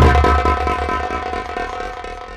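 Live band music for folk theatre: a loud hit starts a held chord that slowly fades, over a low drum rumble.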